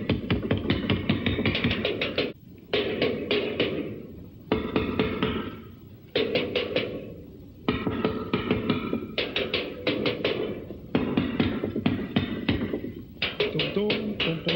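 A small drum kit, a bass drum and tom-toms, played with sticks in quick runs of strikes lasting a second or two, breaking off for short pauses several times.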